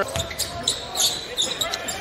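Basketball game sound on a hardwood court during live play: the ball bouncing as it is dribbled, with two short high sneaker squeaks, over the murmur of the arena crowd.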